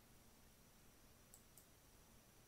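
Near silence: faint room tone, with two faint clicks close together about a second and a half in.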